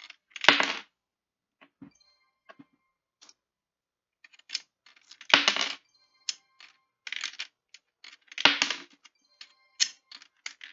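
Coins being fed one after another into a Piso WiFi machine's coin slot, clinking and clattering as they drop through. There are three loud clatters: about half a second in, at about five seconds and at about eight and a half seconds. Smaller clicks and brief metallic ringing come between them.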